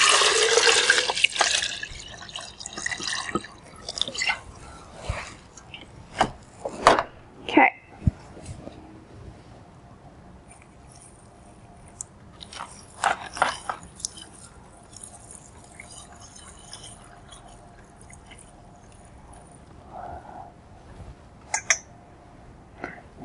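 Solvent being poured into a Soxhlet extractor, with a slight rise in pitch as it fills, ending about two seconds in. Then scattered clinks and knocks as the glassware and jug are handled, with a cluster of them about halfway through.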